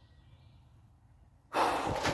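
Quiet woodland room tone, then about one and a half seconds in a man's short, loud sigh close to the microphone.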